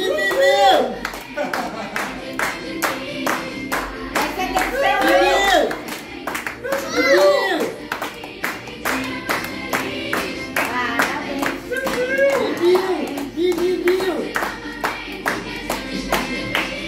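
A group clapping in a steady beat, about three claps a second, while singing a birthday song together.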